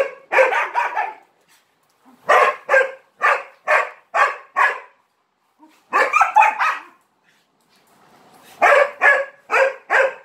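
A dog barking over and over in runs of three to six quick barks, about two or three a second, with short pauses between runs.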